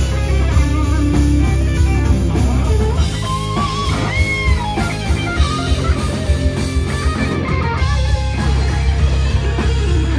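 A rock band playing live and loud: electric guitars, bass guitar and drum kit, with notes bending up and down about halfway through.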